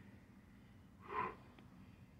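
A man's single short, forceful breath through the nose, about a second in.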